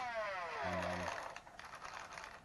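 Flywheel motors of a Lepus Mk1 3D-printed full-auto Nerf blaster spinning down after a rev: a falling whine that fades out about a second in.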